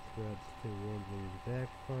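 A man's voice in short low phrases, over a steady high-pitched whine.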